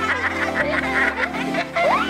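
Background music with steady held chords, and a high-pitched snickering laugh over it that breaks off near the end.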